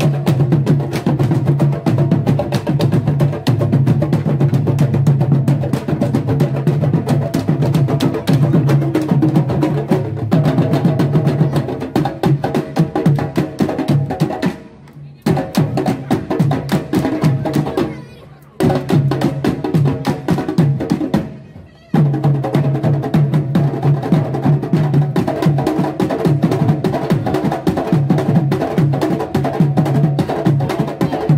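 Candombe drum line of tambores (chico, repique and piano) playing a fast, dense rhythm with sticks and hands, the sticks also clacking on the drum shells. The playing drops out briefly a few times around the middle.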